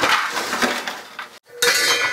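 Steel dually simulator wheel covers clanking and clattering against each other and the truck bed, with a metallic ring. There are two bouts, one at the start and a louder one about a second and a half in.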